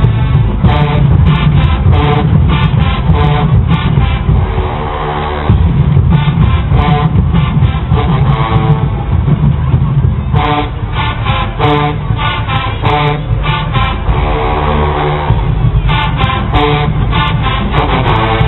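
Marching band brass and drum line playing loud, with sousaphones and bass drums underneath, in runs of short punched chords broken by held chords about four seconds in and again near fifteen seconds.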